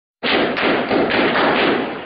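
Dense crackle of gunfire during a firefight, loud and distorted by the microphone, starting abruptly a moment in.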